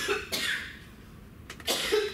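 A woman coughing in a fit: a pair of sharp coughs at the start, then another pair about a second and a half in.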